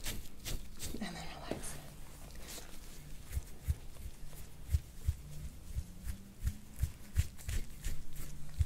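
Metal soft-tissue scraping tool drawn in short strokes over the oiled skin of a back and shoulder, giving faint, irregular clicks and low soft knocks about once or twice a second.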